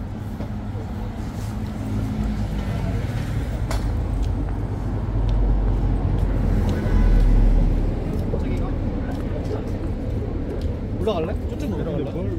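City street ambience: a steady low rumble of road traffic, swelling louder for a few seconds in the middle, with passers-by talking, most clearly near the end.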